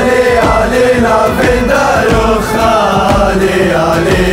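Music: a group of voices singing a drawn-out melody together in ultras-style chant over a steady beat.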